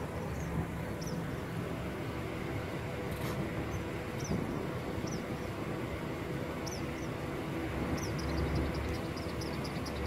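A black Ford Mustang's engine running with a low, steady rumble, while short high bird chirps sound over it every second or so, with a quick run of chirps near the end.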